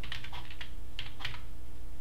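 Computer keyboard being typed: about six quick, irregular keystrokes as a short command is entered, over a steady low hum.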